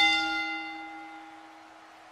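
A bell struck, its ringing tone fading out over about two seconds, sounding the end of the match.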